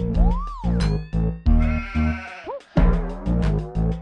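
Electronic music with a heavy pulsing bass line, chopped by abrupt stop-start edits, with rising-and-falling sliding tones over it.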